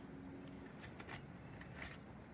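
Faint clicks and taps of plastic markers being handled and laid one by one on wooden deck boards. There are a few light clicks about a second in and another near the end, over a quiet background.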